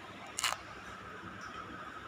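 A single sharp click about half a second in, over steady background noise with a faint constant tone.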